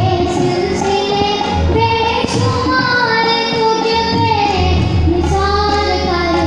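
A boy singing into a microphone, holding long notes that glide up and down, over backing music with a low beat.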